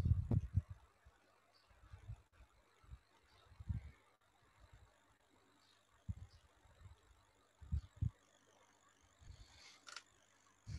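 Irregular low thuds and knocks of a stylus and hand working on a pen tablet while writing. They are loudest in the first half second, then come again in scattered clusters, with faint ticks above.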